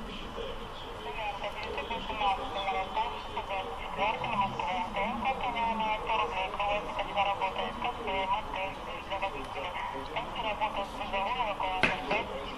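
A flock of birds calling and chattering continuously, with many wavering, overlapping calls.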